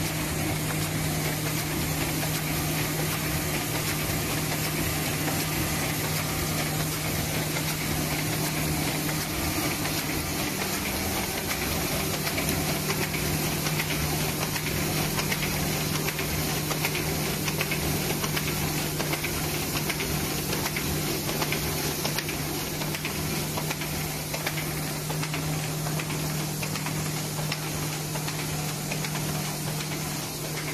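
Semi-automatic paper bag making machine running steadily: a constant low hum under a continuous hiss and rapid mechanical clatter from its rollers and feed.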